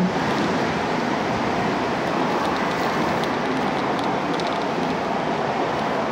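Steady outdoor noise of surf and road traffic from the seafront, with a few faint rustles of a plastic-backed pull-up diaper being handled.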